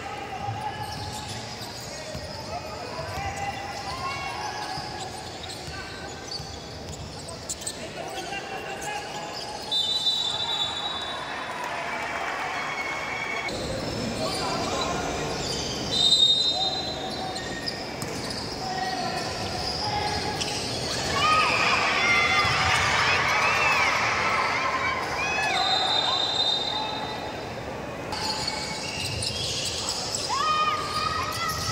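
Live indoor basketball game in a gym: a basketball bouncing on the court, short high squeaks from players' shoes, and spectators' voices, which swell into louder shouting about two-thirds of the way through.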